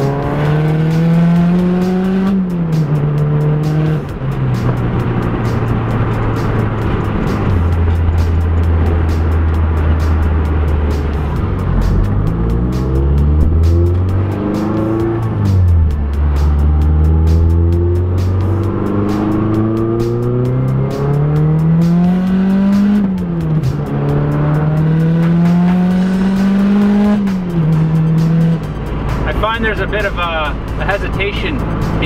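Turbocharged 2.3-litre four-cylinder of a first-generation Mazdaspeed 3, heard from inside the cabin and pulled hard at wide-open throttle. The engine note climbs several times and drops sharply at each upshift, with a steadier, lower stretch of cruising in the middle.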